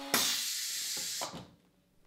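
Compressed air hissing from the valve of a woodworking jig's pneumatic clamps as they are switched. The hiss lasts a little over a second, then fades away.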